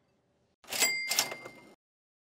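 Cash register 'cha-ching' sound effect: two quick clatters with a bell ringing over them, starting about half a second in and cut off abruptly after about a second.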